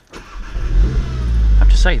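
Volkswagen Golf R Mk7's turbocharged 2.0-litre four-cylinder engine starting, heard from inside the cabin: it catches just after the start and flares up loud, then the revs ease down toward idle.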